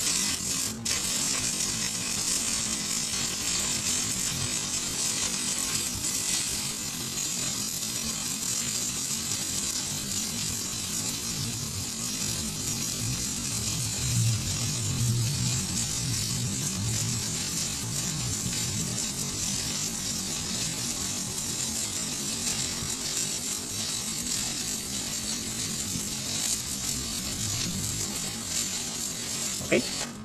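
Shielded metal arc (stick) welding arc on a pipe joint in the 5G position, crackling and sizzling steadily as the electrode burns. It cuts off suddenly near the end as the arc is broken.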